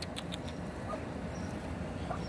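A few faint, short high peeps from Muscovy ducklings in the first half-second, over a steady low outdoor rumble.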